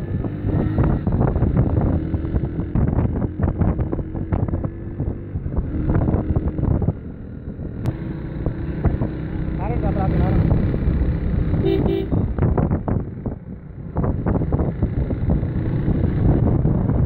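Wind buffeting the microphone of a camera riding on a moving motorcycle, over the running engines of a group of motorcycles. A brief horn toot comes just before twelve seconds in.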